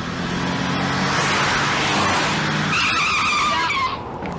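A van's engine runs as it speeds in. Its tyres then squeal in a skid as it brakes hard to a stop in the last second or so.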